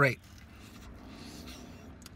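A spoken word trailing off, then faint, steady background noise with no distinct event.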